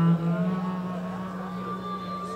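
A low note from the band's amplified stage instruments, held steady after a louder attack at the start, with faint higher tones sliding above it.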